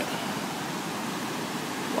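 Whitewater of the Great Falls of the Potomac River pouring over rock ledges, a steady even rushing.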